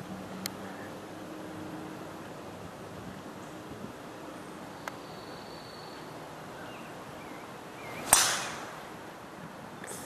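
Golf driver striking a ball off the tee about eight seconds in: a brief rush of the swing rising into one sharp crack of club on ball, fading over about half a second.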